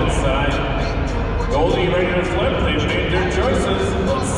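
Arena crowd chatter, many voices talking at once, with music playing over it.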